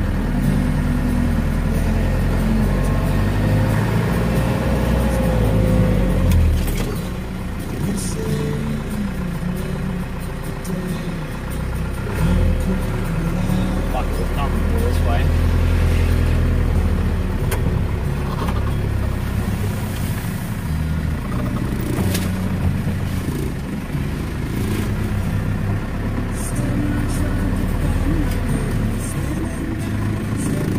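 In-cabin noise of a four-wheel-drive vehicle driving slowly over a rutted sand track: the engine runs low and rises and falls, with scattered knocks and rattles as the vehicle bumps along.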